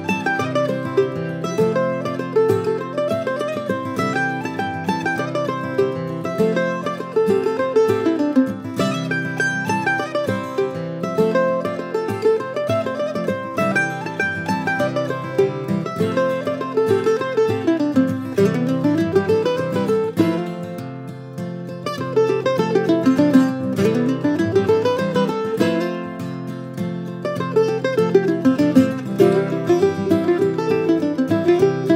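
Apitius F-style mandolin picking the quick melody of an old-time fiddle tune in C major, a steady run of single notes rising and falling through the sections of the tune.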